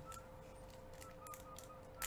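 Faint crinkling and tearing of a foil baseball-card pack wrapper being opened by hand: a scatter of small, sharp crackles.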